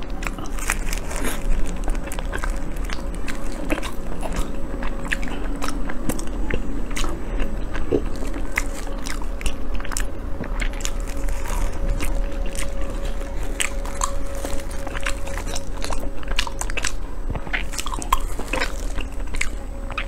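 Close-miked mouth sounds of a person biting and chewing soft chocolate mochi: a dense run of quick, sharp wet clicks throughout.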